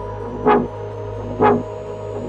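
Progressive house track: a pitched electronic hit pulses twice, about a second apart, over a steady low drone, while a thin high riser climbs slowly.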